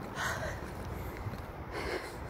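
Heavy breathing close to the microphone, two breaths about a second and a half apart, from someone out of breath from walking up a steep ramp.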